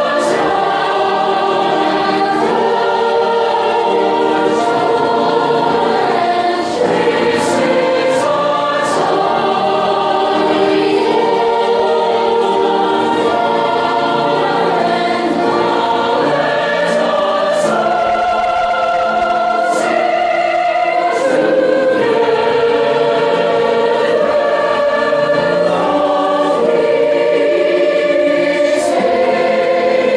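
A choir singing with no break, its voices moving in sustained, overlapping lines.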